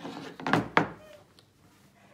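Two sharp thunks on a tabletop, about a third of a second apart.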